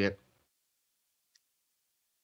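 Near silence with a single faint, short click a little over a second in, from a computer mouse clicking an on-screen button.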